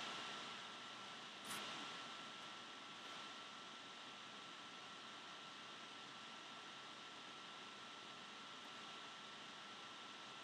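Near silence: steady low hiss of room tone with a faint thin steady whine, and one brief faint rustle about one and a half seconds in.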